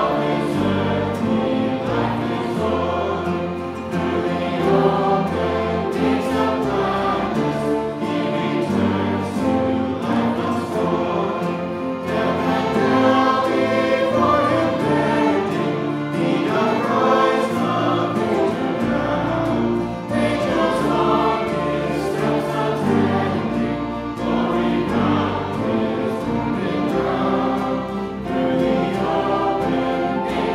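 A congregation singing a hymn together, accompanied by a small string ensemble of violins, steadily and without a break.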